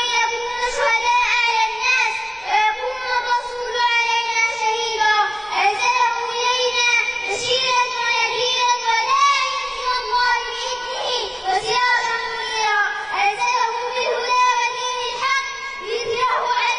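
A young girl reciting the Quran in a melodic chant, with long held notes.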